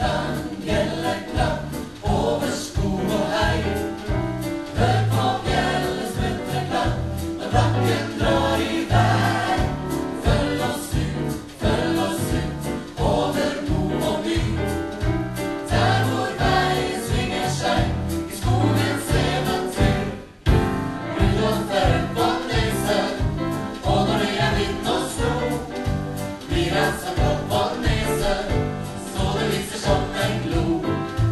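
A mixed choir of men and women sings a Christmas medley with a live band: drum kit keeping a steady beat, acoustic and electric guitars, piano and a strong bass line. About twenty seconds in there is one brief break.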